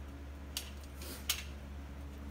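A few brief, light clicks and scrapes, the sharpest about a second and a half in, over a steady low hum.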